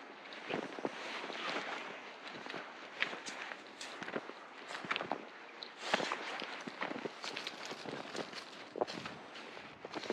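Footsteps crunching through snow: an irregular series of short crunches from walking on a snowy path.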